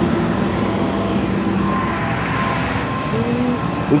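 Steady freeway traffic noise mixed with the low running of heavy-truck engines, with faint high beeps twice in the middle.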